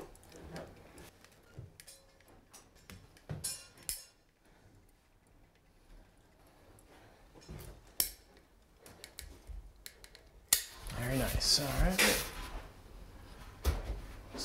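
Manual caulking gun dispensing a bead of construction adhesive: a few quiet, scattered clicks and squeaks of the trigger and plunger rod, the sharpest click about eight seconds in. Voices come in over it near the end.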